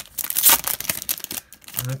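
Foil wrapper of a 2019-20 Upper Deck Series One hockey card pack being torn open and crinkled by hand. The dense, crackly rustle dies away about a second and a half in.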